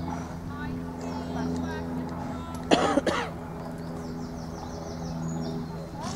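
A person coughs once, a short double burst about halfway through. It is the loudest sound here, over a steady low hum.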